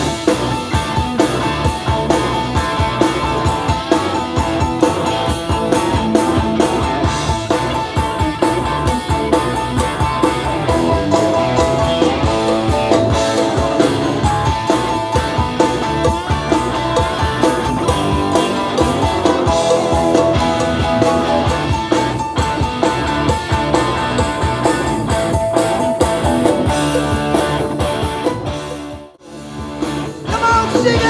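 Southern rock band playing live: electric guitars sustaining long lead notes over a drum kit, without vocals. The sound drops out briefly near the end.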